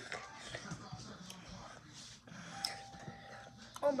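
Faint voices and music in the background, with a few small clicks and rustles from handling close by, and a faint steady tone lasting about a second shortly before the end.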